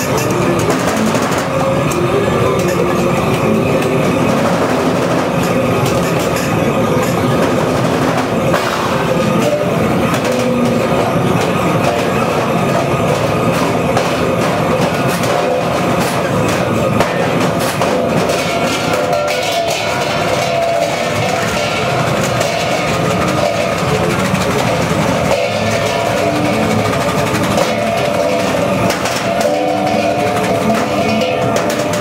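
Free-improvised music for percussion, double bass, guitar and electronics: a dense, continuous texture of held tones with scattered clicks and clatter, at a steady level throughout.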